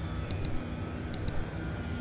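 Steady low rumble of distant engine noise from outdoor street surroundings, with a few short, faint high ticks.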